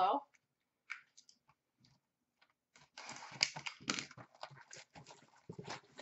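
Trading card box packaging being handled: a few faint clicks, then from about three seconds in a run of irregular crinkling and rustling.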